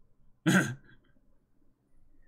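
A man clears his throat once, a single short, sharp burst about half a second in.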